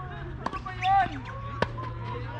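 Tennis balls struck by rackets in a doubles rally: two sharp hits about a second apart, with a brief voice between them.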